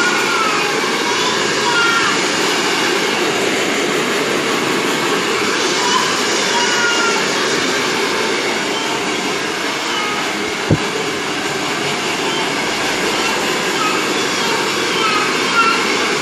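Handheld hair dryer blowing steadily on freshly washed, wet hair, with one short sharp click a little past the middle.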